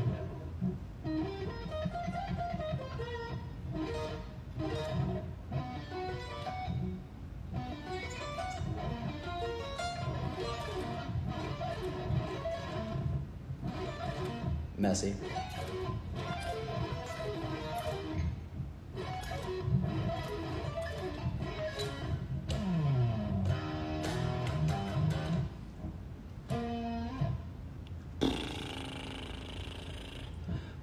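Electric guitar, a Stratocaster-style with maple neck, picked note by note in short melodic runs, with a few slides in pitch in the second half.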